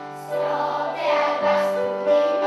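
Children's choir singing, getting louder about a third of a second in.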